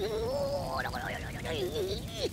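A wavering, pitched voice-like sound from the anime episode's soundtrack, gliding up and down, quieter than the speech just before it.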